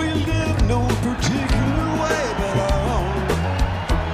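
Live rock band playing: an electric guitar lead with gliding, bent notes over bass and drums.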